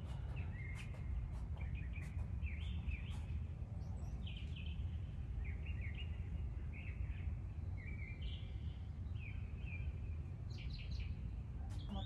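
Birds chirping, short high calls scattered throughout, over a steady low background rumble.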